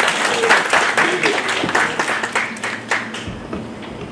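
Audience applauding, strongest in the first three seconds and dying away toward the end, with some voices under it.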